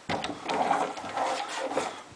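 Wooden closet door being slid across, rolling and rubbing along its track for about two seconds, with a few clicks.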